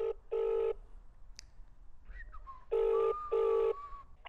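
Double-ring telephone ringback tone playing through a smartphone's speaker: an outgoing call waiting to be answered. Two ring-ring pairs are heard, one right at the start and the next just under three seconds later.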